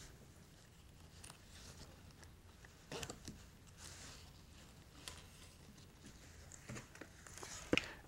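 Faint soft clicks and rustles of hands handling the unzipped pulling grip on a fiber optic trunk cable. The clearest come about three seconds in, about five seconds in, and just before the end.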